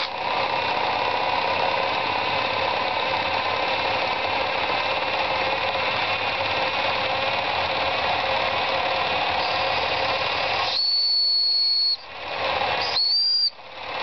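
Small model engine with a large flywheel running fast and steadily, giving an even mechanical whirr. Near the end a high steady whistle-like tone sounds twice, first for about a second and then briefly, while the lower running noise falls away.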